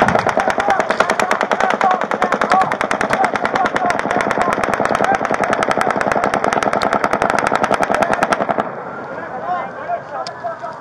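A long, sustained burst of rapid automatic rifle fire from an elevated position, lasting about eight and a half seconds and stopping abruptly. A siren wails underneath it.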